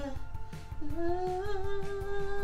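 A woman singing wordlessly into a handheld microphone, sliding up into one long held note about a second in.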